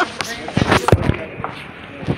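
Kids' voices and laughter with a few sharp thumps, the loudest and deepest about a second in.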